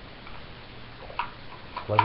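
Plastic parts of a Super Train Megazord toy being shifted by hand, with two light clicks, about a second in and shortly before the end, as a piece is moved forward into place.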